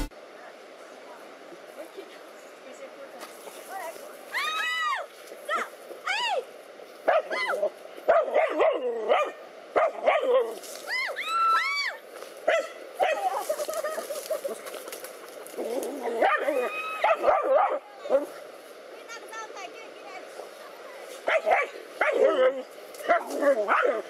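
Dogs barking and yelping at a snake they are confronting: short, arching cries in scattered bursts, starting about four seconds in.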